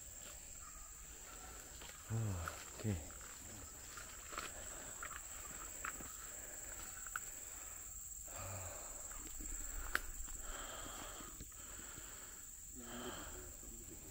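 Steady high-pitched drone of crickets in the grass. Over it come scattered rustles and snaps of undergrowth underfoot, and a few short wordless vocal sounds, two about two seconds in and one near the end.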